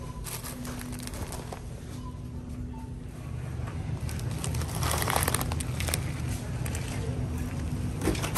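Plastic food bag crinkling and rustling as it is pulled off a shelf and handled, loudest a few seconds in, over a steady low hum of store background noise.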